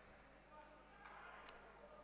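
Near silence: faint sports-hall room tone, with one faint click about one and a half seconds in.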